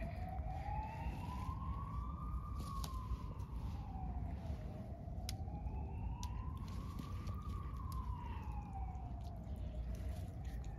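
A siren wailing, its pitch rising and falling slowly, about one full rise and fall every five seconds, over a steady low rumble.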